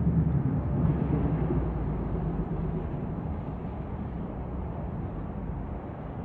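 Distant low rumble of the Twisted Colossus train, an RMC hybrid coaster, running on its steel track over the wooden structure, fading steadily as it moves away.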